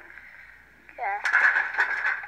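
A short voice sound without clear words about a second in, over a steady hiss, heard as played back from a screen's speaker.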